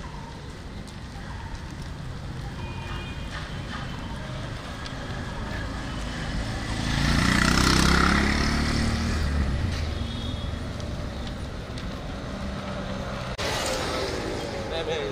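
Street traffic noise from a road alongside, with a motor vehicle passing close by about halfway through, the loudest moment, its engine rumble swelling and then fading.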